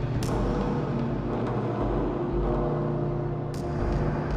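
Dark ambient sound-design drone: a low, steady rumble with several held tones layered above it. There is a sharp click shortly after the start and another near the end.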